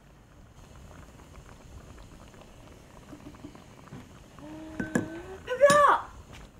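A pot of food simmering softly with a faint bubbling hiss. Near the end comes a woman's short wordless vocal sound with a rising pitch.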